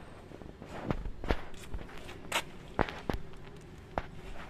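Footsteps on a concrete floor: about six irregular sharp clicks and scuffs spread through a few seconds.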